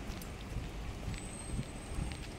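Urban street ambience heard on foot, with soft low thuds of the walker's footsteps and a thin high-pitched squeal that starts just past a second in.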